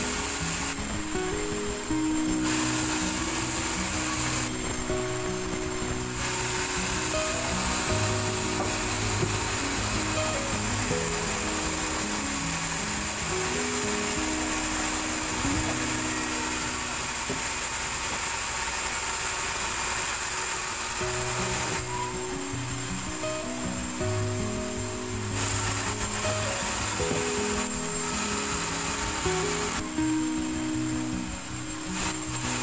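Vertical band saw running and cutting lengthwise through a log. A steady high whine and the hiss of the cut ease off briefly a couple of times between passes, then resume. Background music with a melody plays over it throughout.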